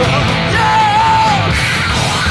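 Rock band playing live under a yelled vocal, with one high note held for about a second in the middle.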